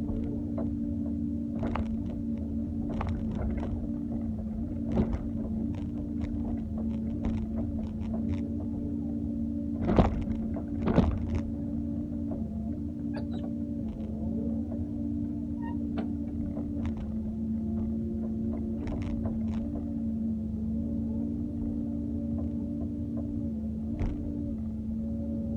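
Doosan 140W excavator running steadily, its engine and hydraulic pump giving an even drone with a steady whine, while the bucket works soil and stones with scattered knocks. Two louder knocks come about ten and eleven seconds in.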